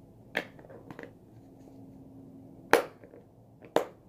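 Four sharp plastic clicks and snaps, the loudest a little under three seconds in, as a plastic slime tub and lipstick tubes are handled.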